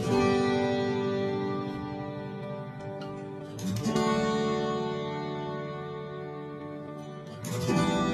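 Background music of guitar chords, a new chord strummed about every four seconds and left to ring out and fade.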